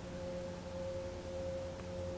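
Faint, steady hum made of a few held pitches, one clearer tone above a low drone: the sound of a distant engine, which the man makes out to be a big barge coming up the lake.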